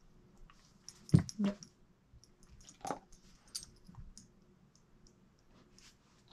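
Sparse clicks and knocks from a young Doberman holding a retrieve article in its mouth, the loudest a sharp knock about a second in.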